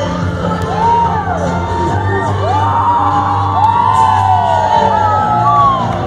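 Dance music playing loudly with a steady bass line, while party guests whoop and cheer over it in repeated short rising-and-falling calls.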